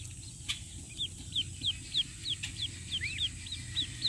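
Welsh Harlequin ducklings peeping: a run of short, high, falling peeps, about three a second, with one lower arched call near the end.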